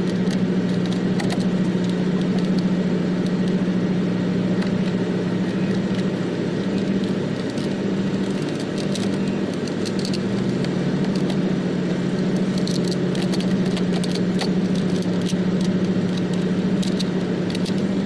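An engine running with a steady low hum, and light scattered clicks and taps as the clips of a truck's air cleaner housing cover are worked by hand.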